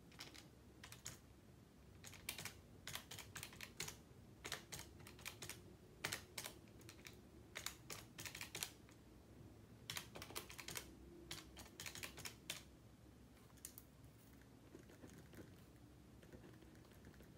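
Pen writing on a stack of paper: faint runs of short, quick scratches and taps of pen strokes, with brief pauses, dying away a couple of seconds before the end.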